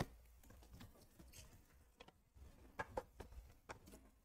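Faint, light clicks of hard plastic graded-card slabs knocking against each other as one is drawn out of a tightly packed PSA box: one tick at the start, then a small cluster of five or six ticks in the last second and a half.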